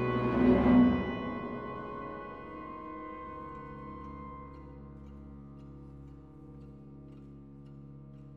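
Symphony orchestra playing a slow passage of sustained chords. A loud accent comes about half a second in, then the held chord slowly fades away.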